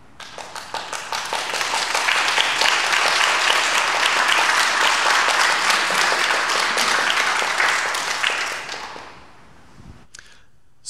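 Audience applauding: a few scattered claps that swell within a couple of seconds into full applause, which dies away about nine seconds in.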